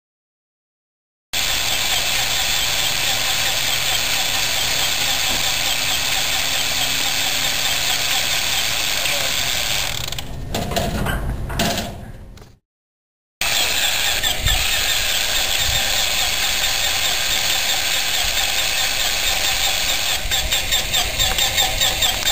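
A nine-cylinder Pratt & Whitney R-985 Wasp Jr. radial engine cranked over and over on its starter without catching. The cranking dies away about ten seconds in, stops briefly, then resumes, growing uneven and pulsing near the end. It fails to fire because the magneto timing was set with top dead centre on the wrong stroke, 180 degrees out.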